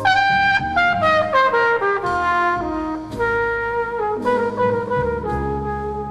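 A brass horn leads a jazz ballad, entering loudly with a quick run of notes that steps downward, then playing longer held notes. Piano and double bass sustain lower notes underneath.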